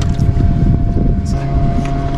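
Steady low hum of an idling motorboat, with irregular wind rumble buffeting the microphone.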